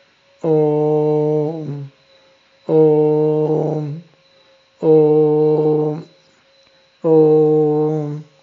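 A man chanting a single-syllable seed mantra (bija mantra): four long held notes at one steady low pitch, about two seconds apart, each ending in a brief hum.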